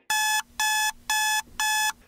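Digital alarm clock beeping: four even, high-pitched beeps, about two a second.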